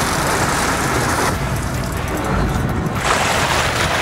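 Boat engine running with a steady low hum under a rushing of wind and water. The rushing thins out for a moment about midway and comes back about three seconds in.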